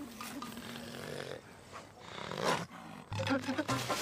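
A wild boar grunting in a hay barn, with a short loud grunt about two and a half seconds in.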